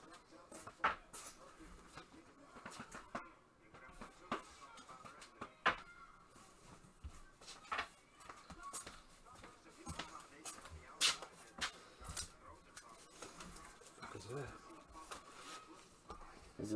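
Quiet room with scattered light clicks and taps from hands handling cards and plastic holders, and a faint voice near the end.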